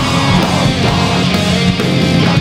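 Metal track at full volume: dense distorted electric guitars with drums hitting throughout.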